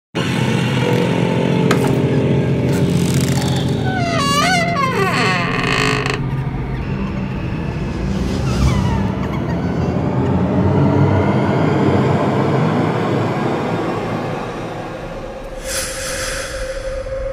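Horror intro sound design: a low, steady drone, with an eerie wavering wail about four seconds in, a falling glide a little after eight seconds, and a sudden whoosh just before the end as the title appears.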